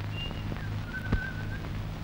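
A few short, soft, high whistled notes, the longest one about a second in, over the steady hum and crackle of an old film soundtrack, with one sharp click about a second in.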